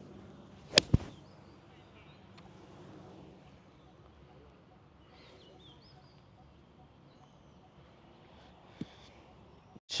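Pitching wedge striking a golf ball: a sharp crack about a second in, with a second sharp click a fraction of a second after it. Faint bird chirps and quiet outdoor background follow.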